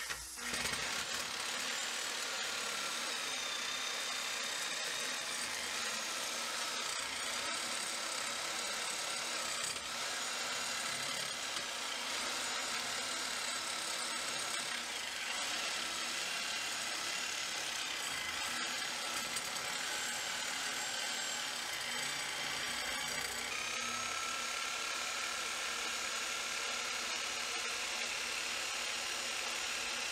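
Reciprocating saw (Sawzall) with a fresh blade running steadily as it cuts into a wooden bulkhead.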